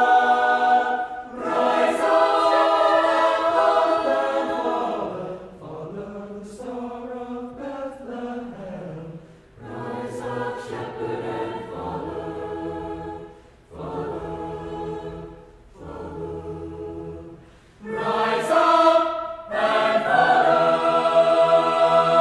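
Mixed choir singing sustained chords in phrases. It is loud at the start, softer with lower voices through the middle, and swells loud again near the end.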